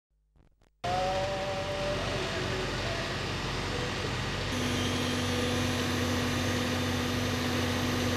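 Engine of a fire service aerial ladder truck running steadily. About halfway through, a steady droning tone joins it.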